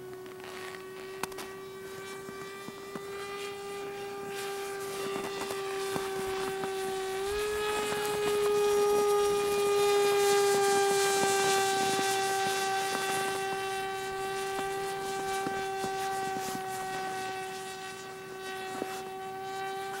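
A HobbyZone Icon RC model plane in flight: a steady whine from its electric motor and propeller. The pitch steps up about seven seconds in, and the sound grows louder as the plane comes closest, then eases off a little.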